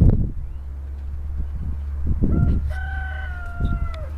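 A rooster crowing once, a short note and then a long held final note of over a second that drops in pitch at its end, over a steady low rumble. A thump at the start.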